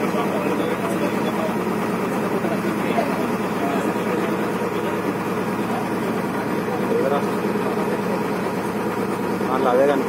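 A boat's engine running steadily, with voices talking faintly over it at moments.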